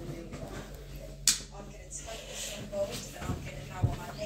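Faint, indistinct voices over a low steady hum, with one sharp click about a second in.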